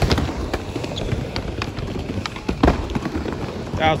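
Skateboard wheels rolling over a panelled skatepark surface, a steady rumble broken by several clacks and knocks from the board, the sharpest about two and a half seconds in.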